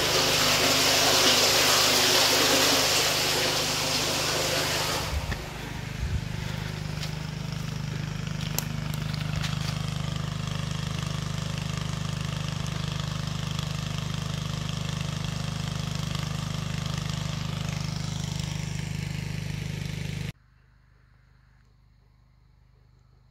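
An engine running steadily at an even speed. For the first five seconds water pouring and splashing into a shaft sounds over it. The sound cuts off suddenly about twenty seconds in.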